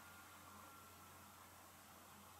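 Near silence: faint room tone and hiss in a pause between sentences of speech.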